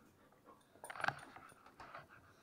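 Puppies moving about close by: a few light clicks, then a short louder flurry of sounds about a second in.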